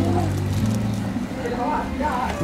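Voices talking briefly over background music, with a low bass line that moves from note to note.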